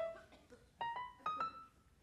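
A brief piano sting: a single note, then a quick run of about four short notes about a second in, stepping upward in pitch and dying away, played to punctuate a joke.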